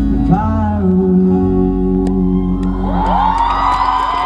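Live band sustaining the final chord of an acoustic pop song: acoustic guitar and keyboard ring on under a briefly sung note. About three seconds in, the audience starts screaming and cheering.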